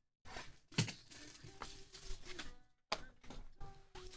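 Trading cards being handled and laid down on a mat: a few light clicks and taps, the clearest about a second in and again near three seconds, with faint held tones behind.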